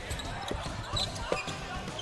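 Basketball bouncing on a hardwood court during play, a few separate bounces.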